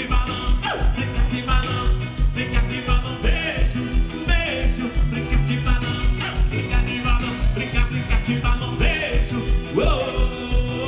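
Live band music played through a stage PA: electric guitars and bass over drums with a steady, driving kick-drum beat.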